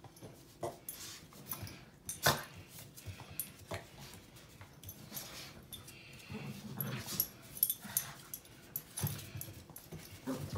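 Cavalier King Charles Spaniel puppy growling and whimpering in short bouts while tugging at clothing in play, among scattered scuffs and clicks; the sharpest click comes a little over two seconds in.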